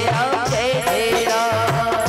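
Live Rajasthani devotional folk band playing: a wavering melody line over a steady dholak drum beat.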